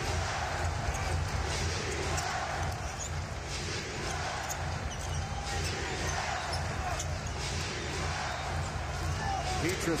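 Steady hubbub of a packed basketball arena crowd, with a basketball being dribbled on the hardwood court.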